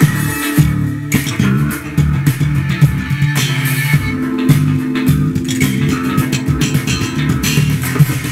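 Status 3000 carbon-fibre headless electric bass played slap-style over a funk backing track: a busy bass line with sharp, percussive slapped and popped notes.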